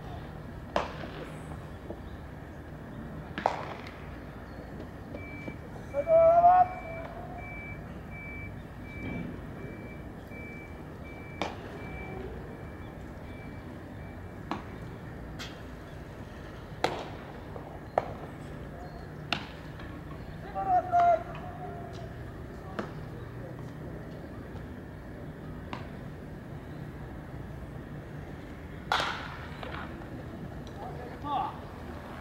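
Outdoor baseball batting practice: repeated sharp cracks of the ball, with a louder crack of bat on ball near the end as the ball is put in play. Two short loud shouts from players break in, and a thin electronic beep repeats steadily for about ten seconds in the first half.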